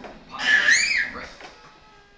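A young child's short, high-pitched squeal whose pitch rises and falls, about a third of a second in, followed by a faint steady held tone.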